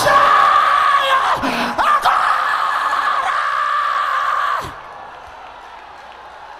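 A man screaming in a long, held, high-pitched shout, amplified through a hall's sound system. It stops suddenly about three-quarters of the way through, leaving only a quieter background.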